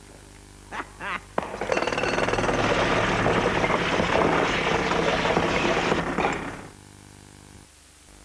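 Pneumatic drill (jackhammer) hammering in a fast, rattling stream for about five seconds, starting a second and a half in after a couple of brief short sounds and cutting off abruptly near the end.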